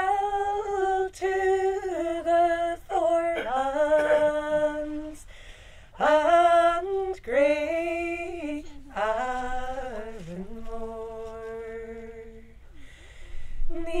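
Women singing unaccompanied: a slow song in long held, gliding notes, phrase after phrase, with short breaths between the phrases.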